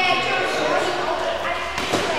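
Indistinct voices echoing in a large indoor hall. A sharp knock comes near the end, which fits a cricket ball dropping onto the hard hall floor.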